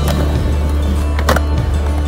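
Background music with a steady bass line over a skateboard grinding a concrete ledge and landing, with two sharp clacks: one right at the start and one about a second and a quarter in.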